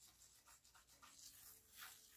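Faint scratching swishes of a fingertip drawing through fine sand on a plate, a quick run of short strokes, the loudest near the end.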